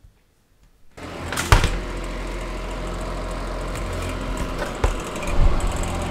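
An electric fan heater starts about a second in and runs with a steady blowing noise and low hum, with a few knocks as it is handled.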